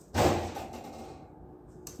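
A single sudden thump just after the start, fading over about half a second, then a faint click near the end.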